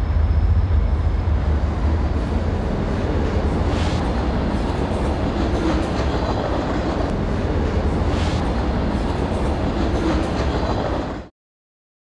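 Freight train running past close by: a steady, loud low rumble of wheels on rail with a few brief higher squeals. It cuts off suddenly near the end.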